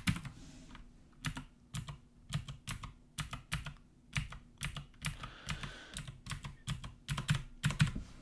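Typing on a computer keyboard: a string of irregular key clicks, a few per second.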